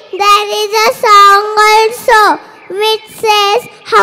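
A young child singing into a microphone in short phrases held on nearly one note, with a brief pause about three seconds in.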